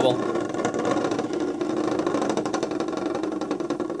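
Two Beyblade spinning tops whirring against each other at the center of a plastic stadium as their stamina runs down: a steady hum with a fine, rapid rattle where the tops rub together.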